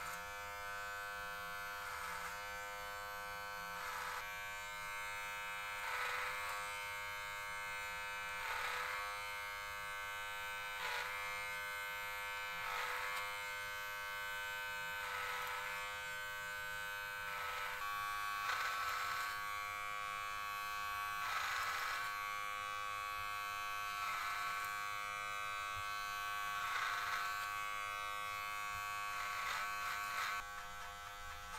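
Electric hair clippers humming steadily while cutting hair clipper-over-comb, each pass along the comb adding a short rasp about every two seconds.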